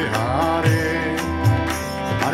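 Kirtan chanting: a voice singing a devotional chant over a harmonium's sustained reedy chords, with tabla strokes marking the beat.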